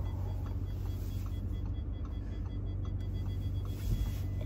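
Steady low mechanical hum heard from inside a car standing on a car lift, with faint ticking about three times a second and a single low thump near the end.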